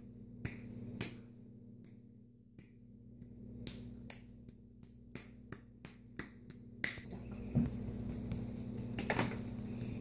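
A lump of damp modelling clay being slapped and pounded between bare hands, a run of sharp pats at about two a second, uneven in spacing and loudness. The clay is being kneaded to work the air pockets out of it.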